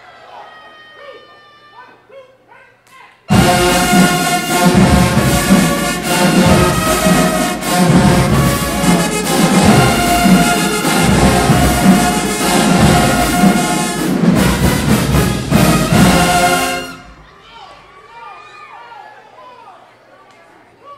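High school marching band's brass and woodwinds (trumpets, trombones, sousaphones, clarinets) playing loudly together with a pulsing low beat. The band starts suddenly about three seconds in and stops abruptly some thirteen seconds later, leaving faint voices.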